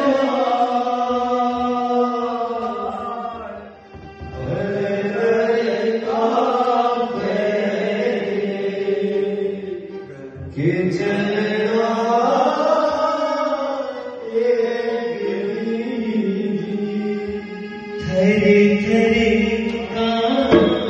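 A man singing a slow, chant-like devotional song in long held, sliding notes to hand-drum accompaniment. The phrases break off briefly about 4 and 10 seconds in.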